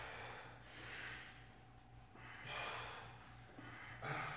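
Forceful breathing from a man lifting a barbell in a close-grip bench press: three hard breaths about a second or more apart, in time with the reps. A faint steady hum lies underneath.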